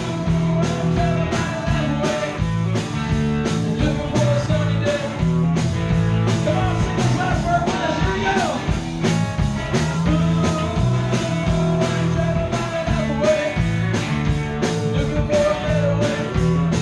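Live rock band playing: drum kit with a steady beat, electric guitars and bass.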